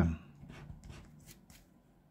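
Faint scraping of a scratcher tool rubbing the coating off a lottery scratch card: a few short scratchy strokes that fade away.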